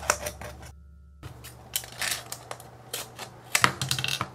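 Scissors cutting through a thin clear plastic bottle: irregular sharp clicks and crackles of the plastic as it is snipped, with a short pause about a second in.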